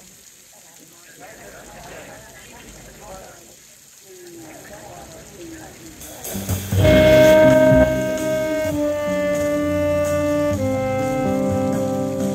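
Faint voices, then about six seconds in a jazz quartet starts a tune: a saxophone plays long held notes that then move into a melody, over electric guitar, upright bass and drums. The first held saxophone note, a little after the start of the music, is the loudest part.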